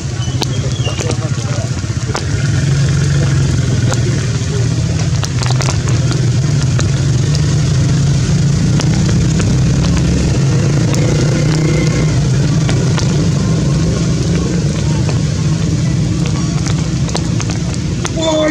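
A steady low engine-like rumble that grows louder a couple of seconds in and holds, with faint voices and a few light clicks beneath it.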